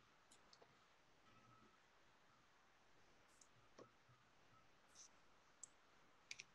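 Near silence: faint room tone with a handful of faint, scattered clicks.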